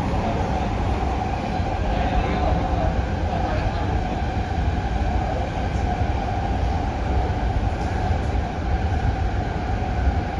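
Cabin noise inside a Hyundai Rotem/Mitsubishi K-Train electric multiple unit running along the line: a steady, loud rumble of wheels and running gear with an even mid-pitched drone over it.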